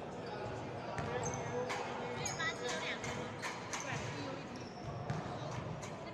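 Basketballs bouncing on a hardwood court as irregular knocks, with a few short high squeaks, over background voices echoing in a large gym.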